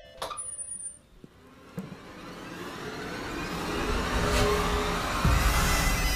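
Film soundtrack swell: a rising rush of sound with a low rumble that builds steadily for several seconds and lands on a deep boom about five seconds in, leading into loud music.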